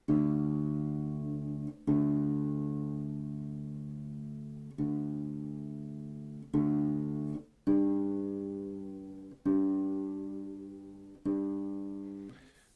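Crafter BA-400EQ acoustic bass guitar being tuned: seven single plucked notes, one to three seconds apart, each left to ring and die away while the tuning pegs are turned.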